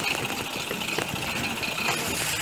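Steady rolling noise of a four-seat pedal surrey bike moving along a paved path, with faint scattered ticks.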